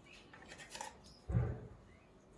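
Faint small clicks and snips of an African grey parrot's beak working food in a steel bowl, with one short low thump about a second and a half in.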